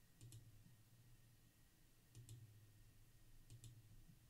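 Faint computer mouse clicks, three times, each a quick double tick of the button pressing and releasing, over a faint steady low hum.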